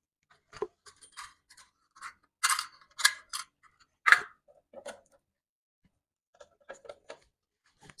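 Scattered short clicks, snips and rustles of sewing tools and paper being handled, loudest in a cluster around the middle.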